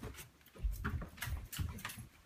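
Irregular soft thumps and rustles, several in two seconds, from a handheld camera being carried by someone walking.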